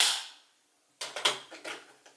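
A brief rush of noise, then from about a second in a run of light clicks and clatter: makeup compacts and brushes being handled and set down on a hard surface.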